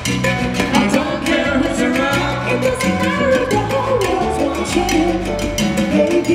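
Live salsa band playing, with percussion keeping a steady, even rhythm under the melody.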